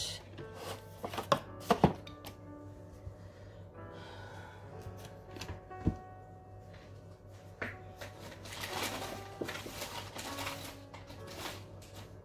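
Soft background music, with a few scattered knocks and rustles of objects being moved about on a desk while someone searches for a misplaced tool.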